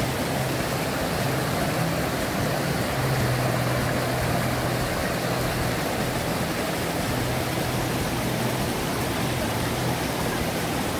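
A mountain river flowing over rocks, a steady rush of water, with a faint steady low hum beneath it.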